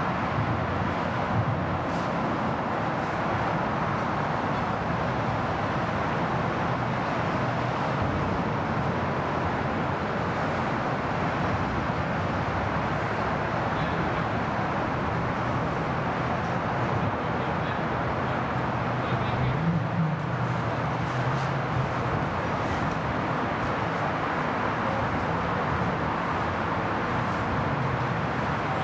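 Steady road traffic noise, a continuous rush of passing vehicles from the highway overpass overhead, with a brief louder swell of low engine sound about twenty seconds in.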